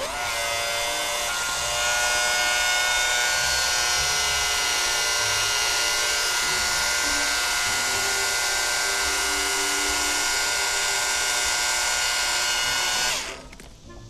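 Small electric transfer pump switching on as it is plugged in, already primed with rainwater from the barrel, its motor running with a steady whine. It cuts off about a second before the end.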